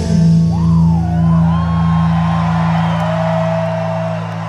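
Live rock band breaks off: the drums stop and a held chord from the electric guitars and bass rings out steadily. Over it, audience members whoop and shout.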